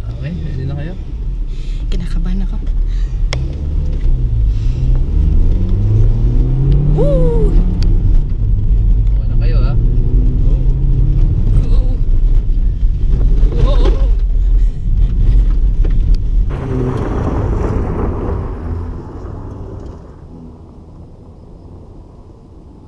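Car engine revving hard from inside the cabin, its pitch climbing and dropping again and again as it is driven through the gears, with voices now and then. About 16 seconds in, this gives way to a loud rush of noise that fades away.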